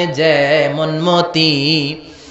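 A man's voice intoning a sermon in a long, held sing-song chant: two sustained phrases on nearly steady pitch, with a short break a little over a second in.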